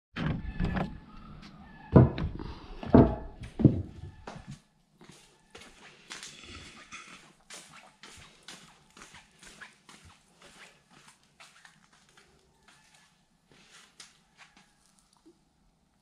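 Handling noise of a handheld camera being carried in a garage: several loud thumps and knocks with a low rumble in the first four seconds or so, then only faint scattered clicks and ticks.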